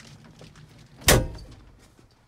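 John Deere 6135M tractor cab door pulled shut, latching with a single loud slam about a second in.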